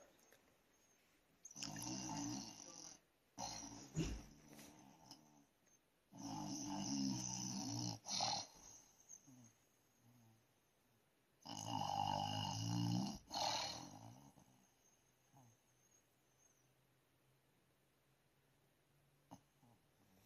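A person snoring: three long snores about five seconds apart, with quieter breathing between them and a short knock about four seconds in.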